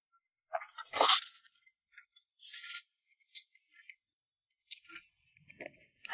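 Close-miked eating sounds of a person slurping oily Nanchang mixed rice noodles: a loud slurp about a second in and a shorter one a little later, then soft wet chewing clicks.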